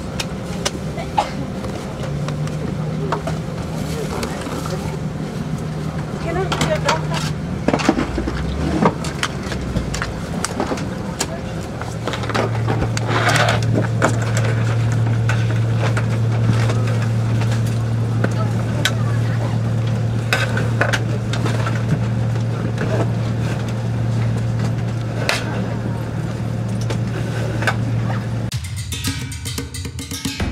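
Airliner cabin noise inside a United Boeing 777-200 on the ground: a steady low hum that grows louder and deeper about twelve seconds in, with faint voices and occasional clicks over it.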